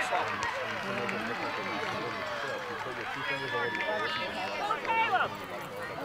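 Several spectators talking and calling out at once, their voices overlapping into unclear chatter.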